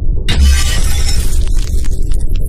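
Glass-shattering sound effect that hits suddenly about a quarter second in, with a heavy low boom under it, then keeps crashing as shards break apart, over dramatic intro music.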